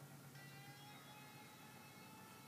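Near silence: faint room tone with a low steady hum, and faint steady tones coming in shortly after the start.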